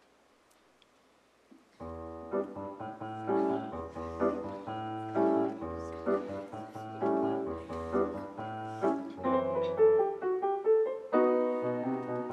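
Grand piano playing the introduction to a choir song. It enters about two seconds in after near silence, with struck chords and a moving melody that grow busier toward the end.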